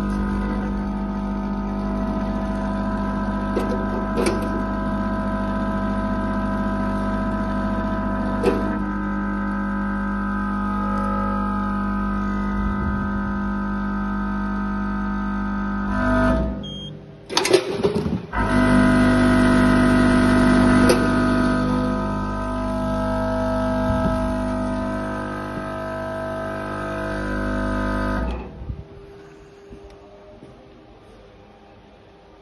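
Vibratory feeder of a single-head weighing machine humming steadily as it doses product into the weigh bucket, with a few sharp clicks. About 16 seconds in the hum drops out for a couple of seconds of clicks and clatter, then starts again and cuts off suddenly near the end.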